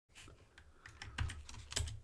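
Typing on a computer keyboard: a run of irregular key clicks, with louder strokes a little after a second in and near the end.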